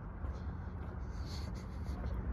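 Outdoor walking ambience: a low, gusting wind rumble on a handheld microphone, with faint scratchy scuffs of footsteps on stone paving.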